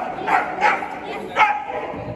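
Corgi barking three times while running an agility course, the last bark about a second and a half in.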